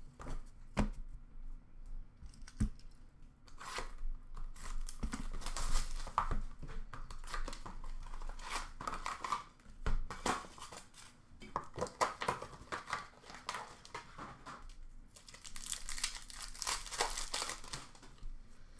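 Foil trading-card pack wrappers being torn open and crinkled in repeated bursts. There are two light knocks in the first few seconds.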